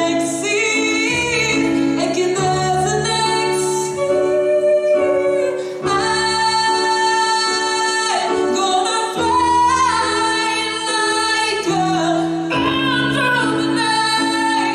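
A woman singing live into a handheld microphone over instrumental accompaniment, holding long notes and sliding between pitches.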